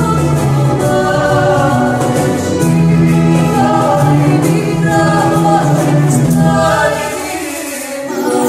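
Music: voices singing together in held harmony over a steady low drone, dipping in level near the end.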